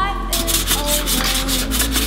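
Sandpaper rubbed quickly back and forth over Bondo body filler on a car's rocker panel, a rapid scratchy stroking that starts about a third of a second in, over background music.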